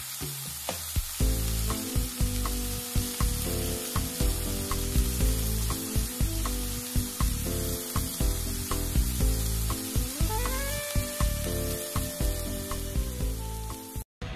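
Bacon sizzling in a frying pan, with frequent small pops and crackles. Soft background music joins about a second in.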